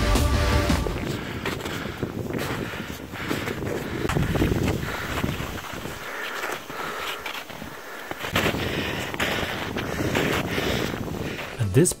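Outdoor sound of hikers on a snowy mountain trail: wind buffeting the microphone, with voices in the background. Background music fades out about a second in.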